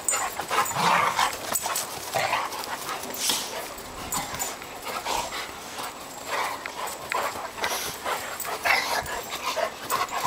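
A boxer and a labradoodle play-fighting, with short, irregular dog vocalisations and scuffling.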